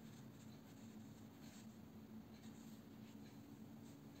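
Faint scratchy strokes of a paintbrush on watercolour paper, a few short strokes, over a steady low hum.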